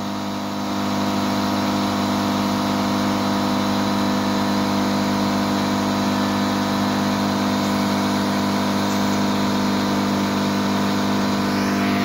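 Air compressor running steadily while its hose and inflation needle fill a flat basketball; the sound gets a little louder about a second in.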